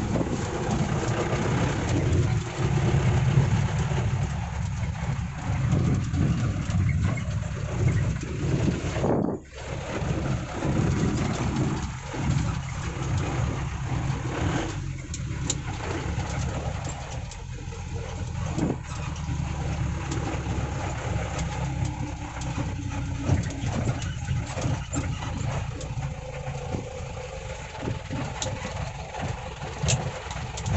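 Mahindra Major jeep's four-cylinder diesel engine running steadily under way, with road and wind noise heard from inside the cabin. The sound drops out briefly about nine seconds in.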